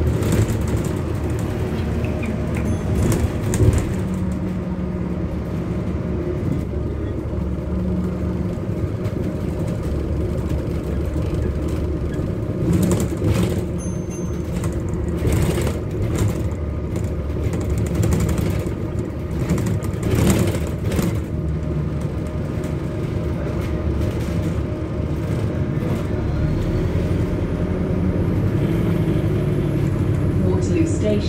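Inside a London bus on the move: a steady low drone and hum from the drivetrain and road, shifting in pitch now and then as the bus speeds up and slows, with a few short knocks and rattles from the body and fittings.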